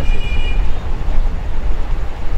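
A steady, loud low rumble, with faint high steady tones during the first second.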